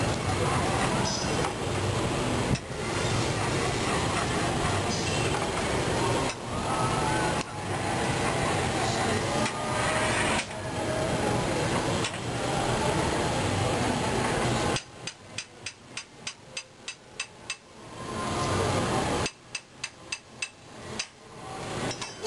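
A loud steady rushing noise that stops and restarts abruptly several times, then, about two-thirds of the way through, a quick run of sharp taps about three to four a second, followed by a few slower taps: metal tapping on the blowpipe to knock the glass piece off at its chilled neck.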